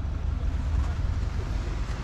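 Off-road SUV engine running at low revs, a low, uneven rumble with some wind noise on the microphone.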